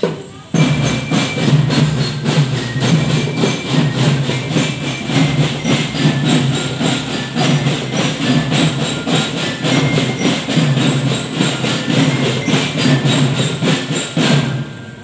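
Marching drum band playing a fast, steady beat on its drums, starting abruptly about half a second in.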